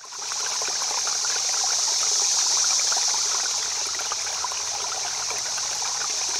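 Running water of a river or stream, a steady rushing babble that fades in over the first half second and then holds even.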